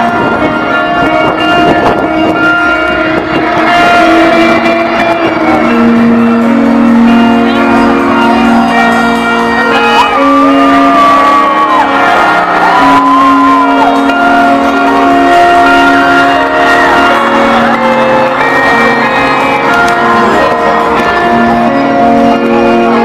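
Live rock band music played loud over a festival PA, recorded from within the crowd: long held keyboard chords with no singing, and a brief high wavering note about halfway through.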